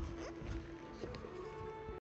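Jacket fabric rubbing and brushing right against the microphone as the player comes up to the camera, opening with a low thump, over steady background music with held notes.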